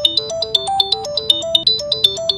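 Smartphone ringing with an incoming call: a ringtone of quick, short, bright notes playing a repeating tune.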